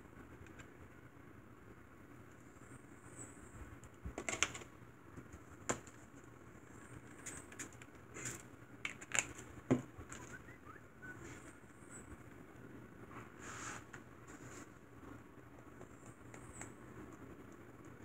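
Faint room tone broken by scattered small clicks and taps of craft supplies being handled on a plastic mat: a paint tube and a flat paintbrush picked up and set down.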